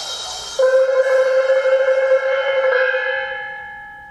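Contemporary music for 37-reed sheng and percussion. A high cymbal shimmer dies away, then a held pitched tone sets in about half a second in. A higher ringing tone joins and fades out slowly over the last second or so.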